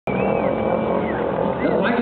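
Stunt motorcycle's engine running at steady revs as the rider holds it up on its rear wheel.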